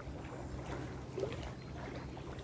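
A low, steady rumble of outdoor background noise, with no clear voices.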